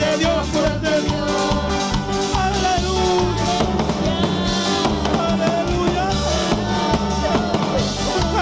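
Live band music for an upbeat Pentecostal worship chorus with a steady Latin-style beat: electronic keyboard, electric guitar and drums, with a man singing into a microphone.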